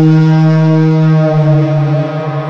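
Logo intro sound: one long, loud, low synthesized tone at a steady pitch, brassy and rich in overtones, like a horn blast.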